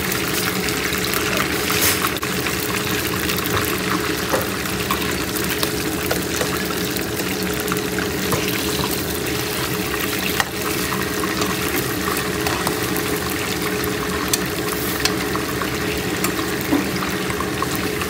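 Beef sizzling and bubbling in oil and its own juices in a wok, a steady frying noise, with occasional clicks of a slotted metal spatula against the pan.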